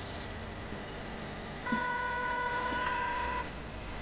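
A phone's ringing tone on an outgoing call: one steady electronic tone lasting a little under two seconds, starting about halfway in, over a low steady rumble.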